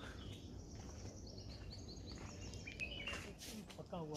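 Faint bird chirps over low outdoor background noise: a quick run of high chirps about a second in, and one more call near three seconds.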